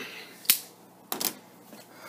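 Sharp clicks and taps from handling a cardboard shipping box on a wooden table: one about a quarter of the way in, then a quick pair a little past halfway.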